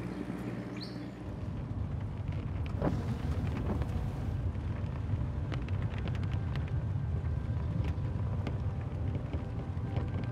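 Steady low rumble of a moving vehicle, getting a little louder about a second in, with a few faint ticks above it.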